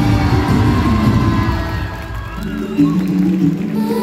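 Music with a busy beat that thins out about halfway through, leaving a few held tones, with one sharp hit shortly after.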